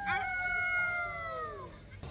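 A man's long, high-pitched shouted call, held and sliding slowly down in pitch until it fades out near the end.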